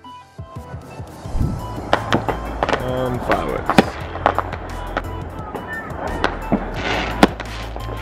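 Fireworks going off at night: a string of irregular bangs and crackles over a steady low rumble, with background music.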